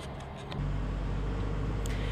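Diesel engine of a Gradall telehandler running steadily, heard from inside the cab. It comes in about half a second in, after faint street noise.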